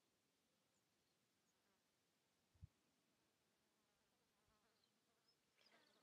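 Near silence, with one faint, brief low thump about two and a half seconds in.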